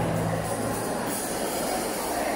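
A live band's last held low notes die away within the first second, giving way to applause and crowd noise in a large hall.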